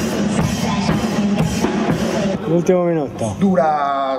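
A band's funk-inflected music with a drum kit keeping a steady beat, which drops away about two seconds in and gives way to a man's voice with sliding pitch.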